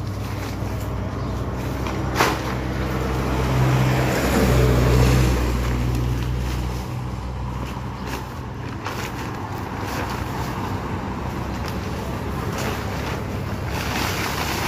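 A motor vehicle passing, loudest about four to six seconds in, over a steady low hum, with a sharp click about two seconds in.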